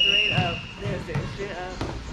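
A volleyball bouncing a few times on an indoor court floor, with players' voices; a steady high whistle tone stops early on, less than a second in.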